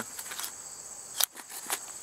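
Crickets chirring steadily in the background, with a few small handling clicks and one sharp click about a second in as a nylon pouch on the pack is worked open.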